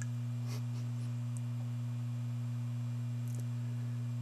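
A steady low hum: one deep tone with a fainter tone an octave above it, unchanging throughout.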